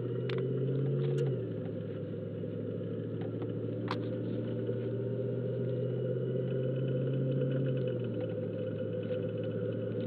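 Car engine running while driving, heard from inside the vehicle, a steady low drone whose pitch drops slightly about a second in and again near the end.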